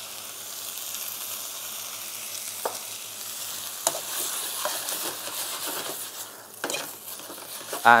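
Beef and vegetables stir-frying in a hot wok, a steady sizzle as they are stirred and tossed with a wok utensil, with a few sharp clicks scattered through.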